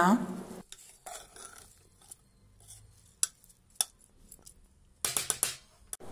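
A metal spoon stirring rice in an aluminium pressure cooker: soft scraping with a few sharp, widely spaced clinks of metal on metal, then a brief clatter of metal about five seconds in.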